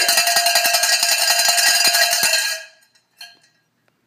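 A cowbell rung rapidly and continuously, with loud clanging strokes, stopping abruptly about two and a half seconds in. A few faint knocks follow.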